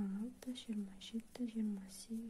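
A woman speaking softly in short, evenly paced syllables, counting crochet chain stitches aloud in Kazakh.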